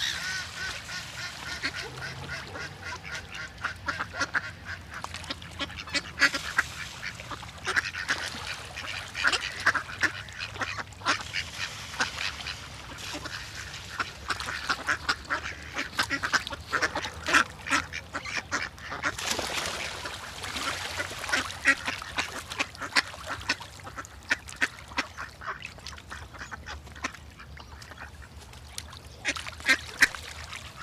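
Ducks quacking over and over, in many short, irregular calls.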